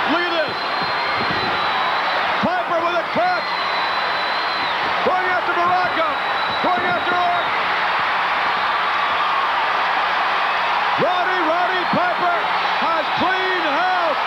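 Arena crowd yelling and cheering loudly, individual shouts rising over a steady roar of voices.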